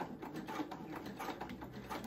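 Electric sewing machine running, its needle stitching rapidly through layers of fabric.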